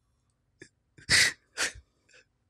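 A man's breathless, near-silent laughter: after a quiet second, two sharp breathy gasps, about a second in and half a second apart.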